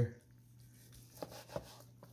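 Long slicing knife cutting through a smoked pastrami brisket, with two short knocks of the blade against a plastic cutting board a little over a second in.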